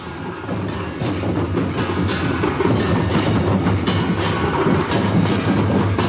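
Folk percussion: a large double-headed barrel drum beaten with a stick, with brass hand cymbals clashing in a steady beat. It grows louder over the first second or so.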